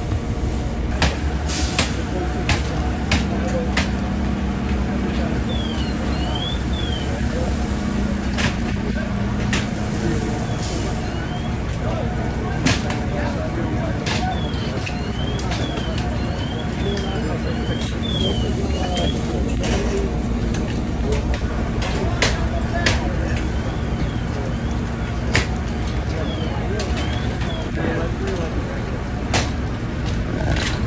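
Steady low rumble of fire apparatus engines running at a fire scene, with scattered sharp knocks and bangs and repeated short high chirps that rise and fall.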